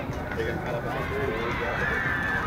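Faint voices of players and spectators calling and chattering across the field, over steady low outdoor background noise.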